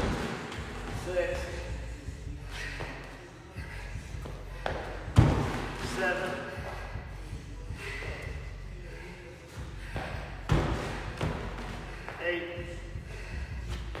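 Heavy thuds about every five seconds as a woman does burpee box jump-overs, her feet landing on a 20-inch wooden plyo box and on a rubber gym floor. Lighter knocks and scuffs of hands and feet come between the thuds.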